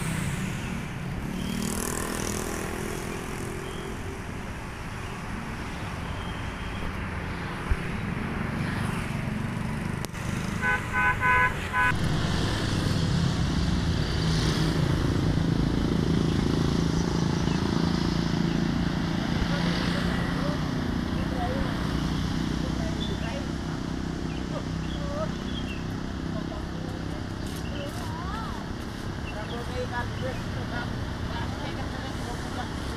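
Bus engine idling with a steady rumble. About ten seconds in, a horn gives a quick run of about four short toots. After the toots the engine rumble grows louder and stays steady.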